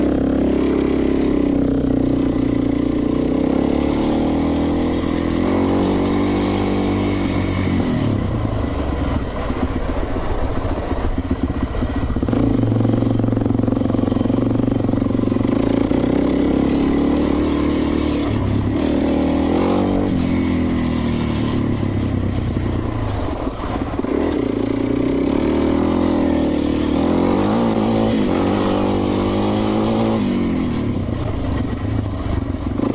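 Suzuki LT-Z 400 quad's single-cylinder four-stroke engine under way on a dirt track. Its pitch climbs and falls several times as the rider accelerates and eases off.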